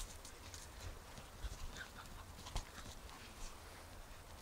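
Faint scuffling and a few scattered light thuds from Central Asian Shepherd puppies running and tussling on soft ground.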